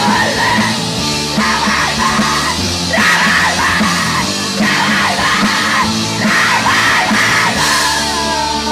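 A punk band playing live: distorted electric guitars, bass and drums, with a singer yelling short phrases over it, about five in a row.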